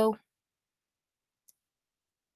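Near silence, broken by a single brief, faint click about one and a half seconds in.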